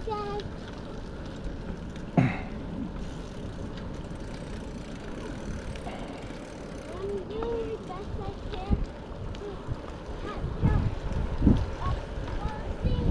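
Steady rush of wind over the microphone and bicycle tyres rolling on a paved path while riding, with a sharp knock about two seconds in. Faint voices come and go in the distance.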